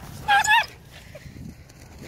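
A dog giving two short, high-pitched yelps in quick succession, excited while waiting for a thrown ball.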